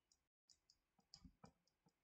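Near silence with a few faint, scattered clicks from a stylus tapping on a tablet while writing by hand.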